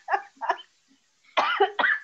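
People laughing over a video call, in two short runs of bursts, the second starting about halfway through.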